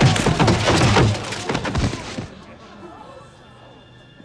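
Film fight sound effects: a rapid run of hits and heavy thuds with shouting voices over the score. They break off about two seconds in, leaving a faint, steady low hum and held tones.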